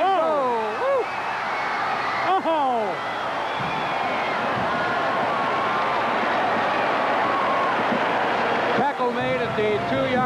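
Stadium crowd cheering steadily at a long gain in a college football game, with a man's voice heard briefly at the start and again about two seconds in.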